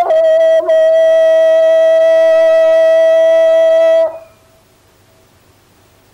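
A wind instrument holding one long, steady note, sliding up into it at the start and breaking off abruptly about four seconds in.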